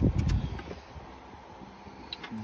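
Handling noise from the phone being moved: a low rumble with a few light clicks at the start, then a faint steady hum.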